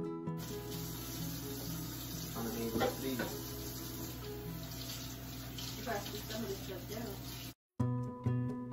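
Kitchen tap running steadily into the sink as baby bottles are rinsed by hand, under background music with a few faint words. The running water cuts off abruptly just before the end.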